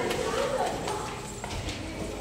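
Footsteps of several people on a hard tiled floor and stairs: irregular clicks and slaps, with voices chattering underneath.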